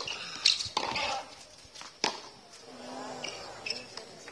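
Tennis racket strikes on the ball: a sharp crack as the serve is hit, then another crack about two seconds in.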